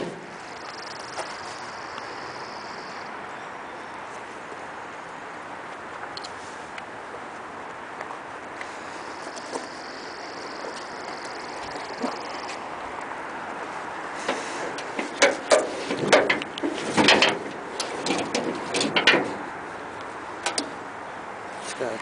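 Metal clunks and knocks of the truck's steel hood being unlatched and raised: a cluster of sharp knocks in the last third. Under them is a steady outdoor background hiss.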